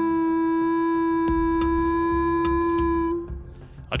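Wolf howling: one long howl held at a steady pitch, fading out about three seconds in.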